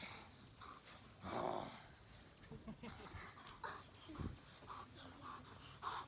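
German shepherd barking, one loud bark about a second and a half in, with shorter, fainter sounds after it.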